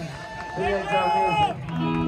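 A man's voice through a live PA, speaking or calling out in short phrases as the band's music dies away.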